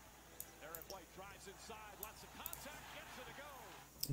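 Faint basketball broadcast audio: a voice over the game with a ball bouncing on the hardwood court.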